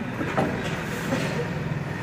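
A steady low machine hum over a background of workshop noise, with a faint knock about half a second in.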